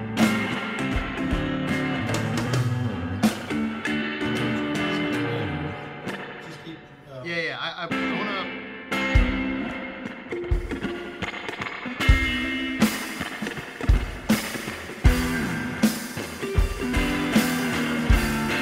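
Guitar and drum kit jamming a rock groove: sustained guitar chords over kick-drum hits. About halfway through the playing drops to a quieter stretch of wavering notes, then picks back up with steady cymbal hits from about twelve seconds in.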